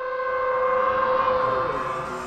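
A held electronic tone of several steady pitches sounding together, swelling louder toward the middle and fading near the end: the sound effect of an animated logo intro.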